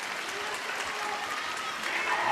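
Arena crowd applauding steadily.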